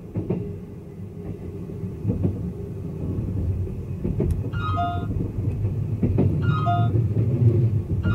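Train running on the rails, heard from inside the carriage: a steady low rumble that grows louder, with a few sharp clicks about every two seconds. Short piano-like music notes come in over it in the second half.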